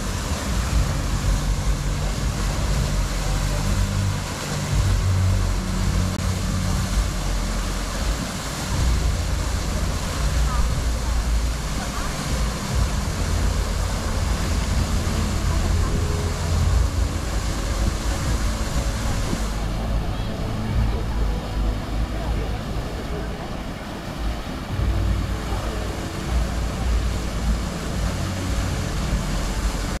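Wind buffeting the microphone in uneven low rumbles over a steady wash of water from the Merlion fountain's jet falling into the bay, with people chattering in the background.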